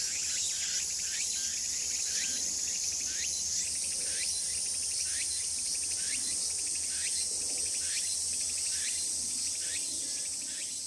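A chorus of insects: a steady, high-pitched shrill drone that steps up in pitch about a third of the way in, with a short rising chirp repeating a little under twice a second. It begins to fade near the end.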